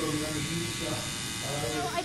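Electric tattoo machine buzzing steadily as its needle works on the skin of a foot.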